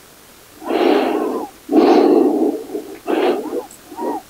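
A woman breathing deeply and audibly close to the microphone: three long, airy breaths with short pauses between them, the middle one loudest.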